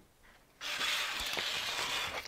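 Sanding strip rustling and scraping against the drum of a drum sander as it is unwound off, starting about half a second in.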